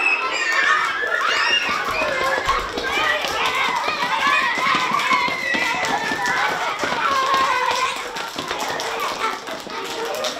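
A crowd of young children calling out and chattering all at once, with scattered sharp claps or taps mixed in.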